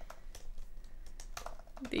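Typing on a computer keyboard: a rapid, uneven run of key clicks.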